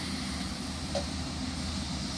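Steady rushing, hissing noise from a hot oven roasting skewered chicken, its fat dripping down and smoking.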